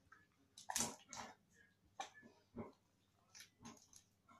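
Clear-glue slime squelching and popping as it is stretched and squeezed by hand: a string of short, irregular wet clicks and snaps, faint overall.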